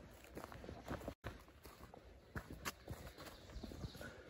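Footsteps on a dirt forest trail, an uneven series of soft steps with light rustling. The sound cuts out for an instant about a second in.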